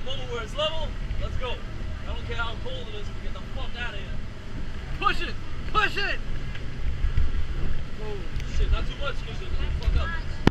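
Low, steady rumble of a Robalo boat running through rough water on its outboard motor, with people's voices calling out over it at intervals.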